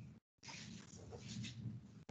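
Faint background noise from a video-call microphone, a low hum with a few faint higher traces. It cuts out abruptly for a moment near the start, as the call's noise gate closes, then comes back.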